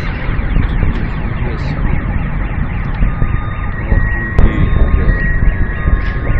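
Car alarms sounding over a loud, heavy low rumble, their steady tones coming in about halfway through; a sharp crack about four and a half seconds in. The alarms were set off by the Chelyabinsk meteor's air-burst shockwave.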